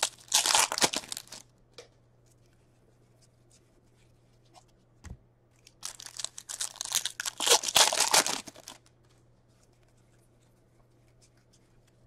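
A hockey-card pack's wrapper torn open and crinkled by hand, in two short bouts about five seconds apart.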